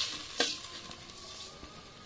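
A metal spoon scrapes once against a metal pot about half a second in, over a soft, steady sizzle of curry gravy simmering.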